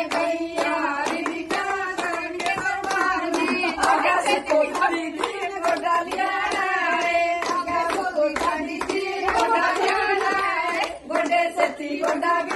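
A group of women singing together while clapping their hands in a steady rhythm.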